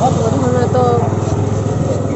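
Several girls' voices talking over one another, with a steady low engine hum running underneath.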